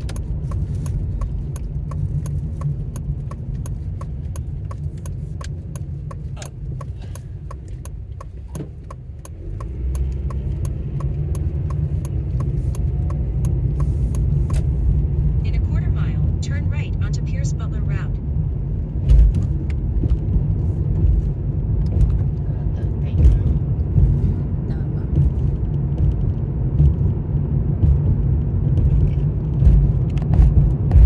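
Car cabin sound while driving: a steady low road-and-engine rumble that grows louder about ten seconds in as the car picks up speed on a main road. For the first half, a turn signal ticks steadily, then stops once the turn is made.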